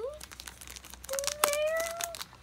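Plastic card sleeves and binder pages crinkling and clicking as trading cards are slid into them. A short, slightly rising held voice sound comes in about a second in.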